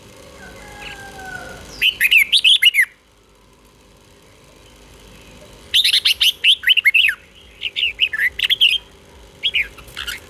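Red-whiskered bulbul singing in bursts of quick, rising and falling whistled notes. There is one short phrase about two seconds in, then a phrase sung twice in a row from about six to nine seconds: the 'double' (เบิ้ล) song. A single brief note comes near the end.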